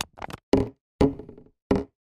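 A plastic bottle striking a hard surface: about four separate hollow knocks, each dying away quickly.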